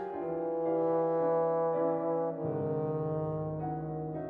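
Bass trombone holding long low notes over piano accompaniment, moving to a new note about halfway through.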